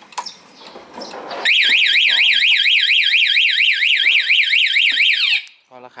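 Motorcycle anti-theft alarm siren, set off by a hand touching the bike, wailing in fast rising-and-falling sweeps, about five or six a second, from about a second and a half in. It cuts off suddenly near the end.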